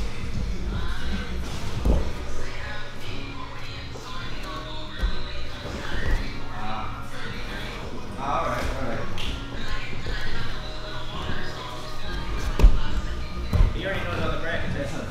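Background music and indistinct voices, with occasional thuds and shuffling of grapplers' bodies on a foam training mat; the sharpest thud comes near the end.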